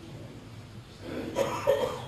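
A person coughing a couple of times in a short break between speech, starting about a second in after a moment of quiet room.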